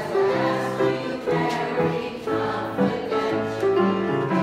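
Choir of elderly singers singing with grand piano accompaniment.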